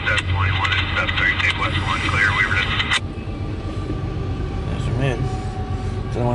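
Freight train cars rolling past close by, a steady low rumble on the rails. During the first three seconds a higher, chattering sound starts and stops abruptly over it.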